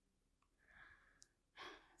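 Near silence: a woman's soft breathing, with a short intake of breath near the end.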